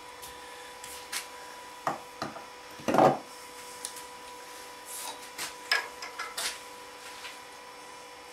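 Wood lathe with a log blank coming to a stop, then a scatter of sharp wooden knocks and rubs as the blank is handled on the lathe, the loudest about three seconds in. A faint steady hum runs underneath.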